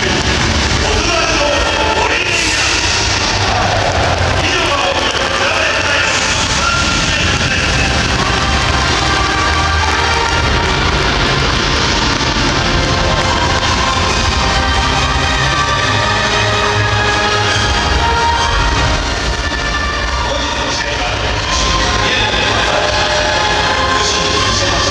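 Loud music over a football stadium's public-address system, accompanying the home club's intro video on the big screen, with crowd noise beneath; the level dips briefly a little before the end.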